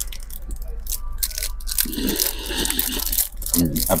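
Small cardboard gift box being handled and pried at with a pen: scattered taps, scrapes and crinkles.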